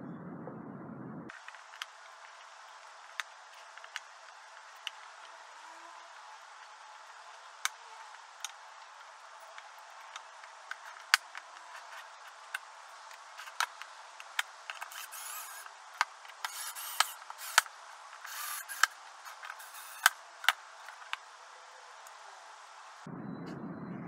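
Wooden parts knocking and clicking as the hook pieces of a wooden coat rack are fitted into the drilled holes of its rails. The knocks are sharp and irregular, busier in the second half, over a faint hiss.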